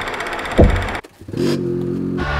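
A loud downward-gliding sound about half a second in and a brief cut to near quiet just after a second, followed by a snowmobile engine running steadily.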